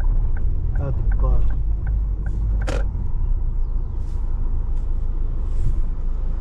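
Low, steady rumble of a car driving, heard from inside the cabin, with one sharp knock a little under halfway through.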